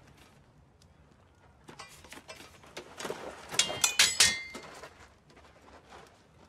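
Two steel swords, a thin light blade against a longsword, clashing in a quick exchange. Light taps and steps come first, then a run of loud metal strikes in the middle, the hardest ones ringing.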